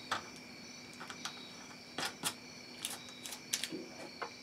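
Light handling noises: a scattering of short clicks and crinkles as the wrapping around the resin-soaked denim stack is folded and pressed by hand in a thin aluminium foil pan, more of them close together near the end.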